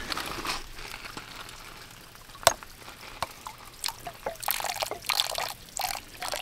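Water trickling and dripping out of a hydraulic ram pump as its pressure tank is drained, letting air back into the tank; the flow fades over the first couple of seconds. One sharp click comes about two and a half seconds in, with a few smaller clicks after it.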